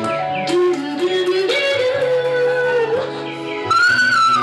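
A woman singing live over steady low backing music, holding long notes that bend in pitch, then leaping up to a higher sustained note near the end.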